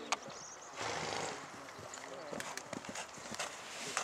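A young horse's hooves beating on the sand of an arena as it canters over a low fence and on, with a louder rush of noise about a second in and irregular hoof clicks after.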